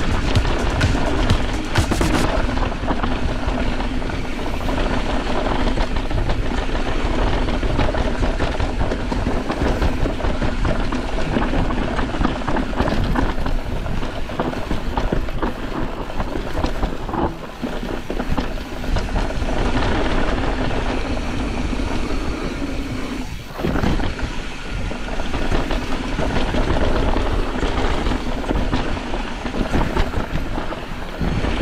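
Mountain bike descending a dirt trail at speed: tyres rolling over loose dirt and roots, the bike's chain and parts rattling, and wind on the camera microphone, with a brief lull about two-thirds of the way in.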